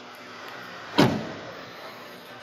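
Rear passenger door of a 2021 Kia Sorento SUV being shut about a second in: one sharp thud with a short fading tail.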